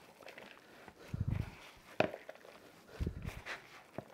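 Ground beef mixed with shredded cheddar, diced onions and chipotle peppers being kneaded by gloved hands in a bowl: faint squishing, louder in two short stretches about a second and three seconds in, with a single click at about two seconds.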